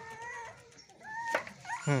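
A dog whimpering: short, high whines near the start and again about a second in, with a sharp click between them.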